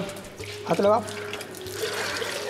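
A cow's urine stream splashing and pouring into a small stainless-steel cup held beneath it, with a brief voice about three-quarters of a second in.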